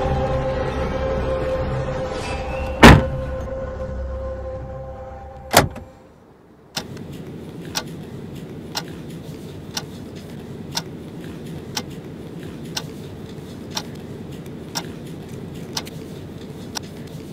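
Dark, droning horror score with two heavy impact hits, the first about three seconds in and the loudest, fading out about six seconds in. Then a clock ticking steadily once a second over a faint room hiss.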